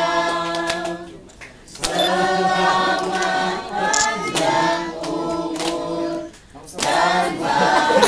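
A group singing a birthday song together, unaccompanied, with short breaks between phrases about a second in and again near the end.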